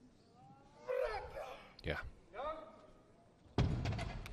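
Voices shouting encouragement during a heavy deadlift pull, then about three and a half seconds in a sudden heavy thud as the loaded 250 kg barbell comes down onto the lifting platform.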